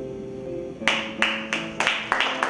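Acoustic guitar's last notes ringing out and fading, then hand clapping starts a little under a second in, at first about three claps a second and quickly getting denser as the applause builds.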